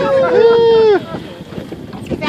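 A drawn-out, high-pitched exclamation from people in a small boat, held for about a second and falling slightly at the end, amid laughter. After it come wind buffeting the microphone and water sloshing against the hull.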